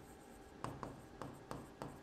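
Writing strokes on a board: about five short, scratchy taps and strokes as a word is written out, starting a little after half a second in.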